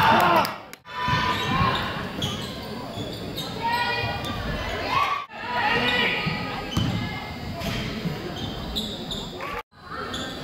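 A basketball bouncing on a hardwood gym floor during play, in a large echoing hall, with voices from players and the crowd. The sound cuts out briefly three times: about one second in, about five seconds in, and just before the end.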